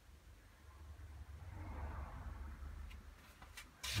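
Faint, soft swishing of a watercolour brush mixing a flesh tone of alizarin and yellow ochre on the palette, swelling and fading over a couple of seconds, over a low steady hum.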